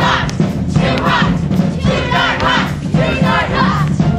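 Dance music from the show tune, with a group of voices shouting and whooping over it in short bursts about once a second.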